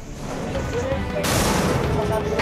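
A sudden loud crashing noise starts about a second in and carries on to the end, over background music.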